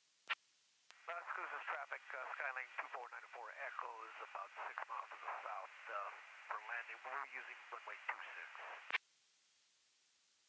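VHF aircraft radio transmission heard through the headset audio: a single voice, thin and narrow-band, for about eight seconds. A sharp squelch click comes just before it and another as it cuts off.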